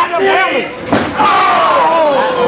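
Shouting voices, broken by one sharp hit about a second in, followed by a long, drawn-out yell that falls in pitch.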